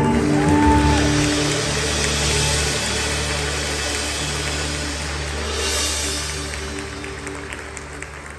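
Live worship band holding its closing chord, with steady bass notes, sustained chord tones and a wash of cymbals, a cymbal swell about six seconds in, the whole slowly fading out.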